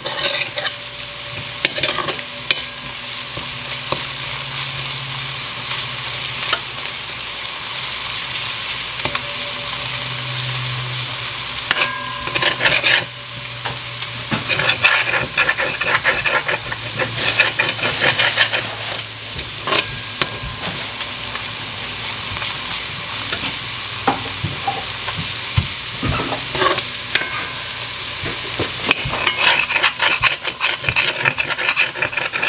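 Grated garlic frying in hot vegetable oil, sizzling steadily on medium-high heat. A metal spoon stirs it, scraping and knocking against the pot now and then.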